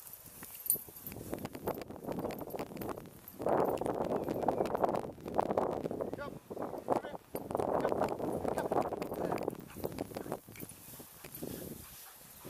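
Long dry grass rustling and swishing as it is walked through, in four or five bursts of a second or two with a faint crackle in between.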